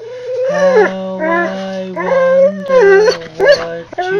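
A golden retriever howling along to a sung nursery rhyme, in long drawn-out notes that waver and glide in pitch, several in a row.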